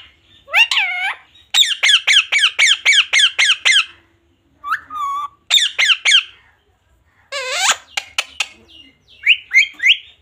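Indian ringneck parakeet calling in high, wavering squawks: a quick run of about eight repeated calls, a pause, a few more calls, then a falling call followed by several short clicks, and rising calls near the end.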